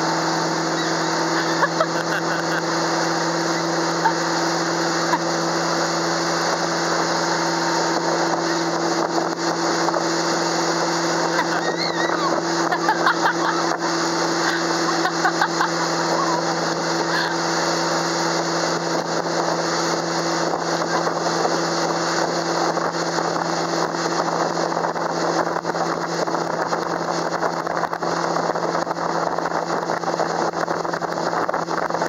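Motorboat engine running at a steady towing speed, an even drone over the rushing water of its wake.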